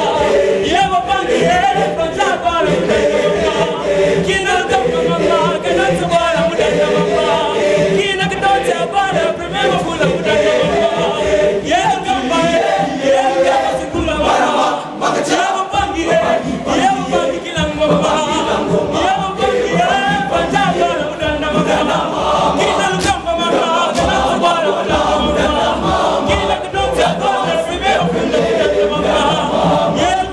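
Schoolboy choir of young male voices singing a lively song a cappella, many voices together.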